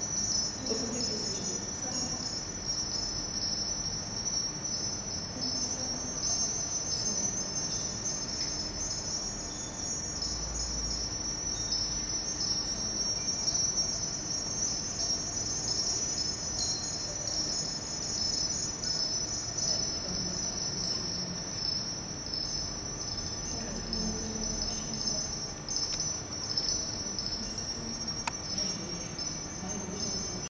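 Steady, high-pitched shimmering chirr that runs without a break.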